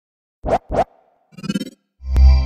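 Animated logo intro sound effects: two quick swishes about a quarter of a second apart, then a short buzzy burst with a low thud under it about a second later, with silence between them.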